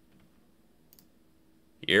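Near silence with a single faint click about a second in, from the computer as the SQL query is run; a man's voice starts just before the end.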